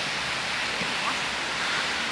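Steady rushing hiss of outdoor noise on the camera microphone, with faint distant shouts from the players.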